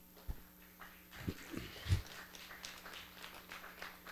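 Handling noise on a handheld microphone as it is picked up and raised: a few low thumps, about a third of a second, a second and a quarter and two seconds in, with light rustling and clicks between, over a faint steady electrical hum.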